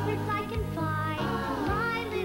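Commercial jingle: backing music with a high singing voice sliding between held notes.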